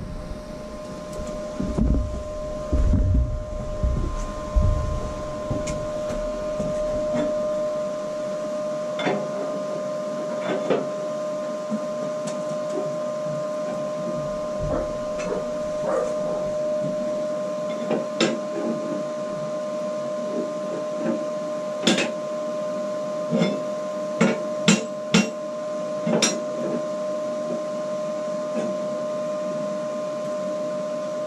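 Steel plate and magnetic clamps being shifted and set on a metal bench: heavy thuds early on, then scattered metallic knocks and clinks, with a few sharp clanks about two-thirds of the way through. A steady machine hum runs underneath.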